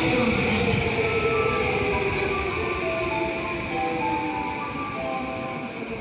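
An electric train slowing down, its motor whine falling in pitch over the first few seconds. A string of short, clear tones at different pitches plays over it.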